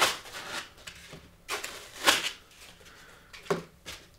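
Foam packing end caps scraping and rubbing as they are pulled off a plastic-wrapped electronics unit. There are a few short rustles, the loudest about two seconds in.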